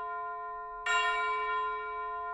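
A bell-like chime in the soundtrack, ringing and slowly fading, struck again just under a second in and ringing on.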